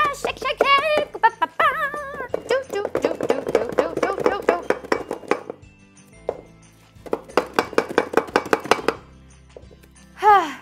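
A woman laughing, then two spells of fast repeated knocking and rattling as a cling-wrapped glass bowl with a small canvas heart inside is shaken back and forth on a table, with music behind.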